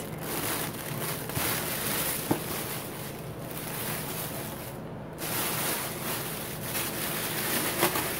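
A silver mylar foil insulating sheet rustling and crinkling as it is handled and lifted out of a cardboard box, with a brief lull about five seconds in.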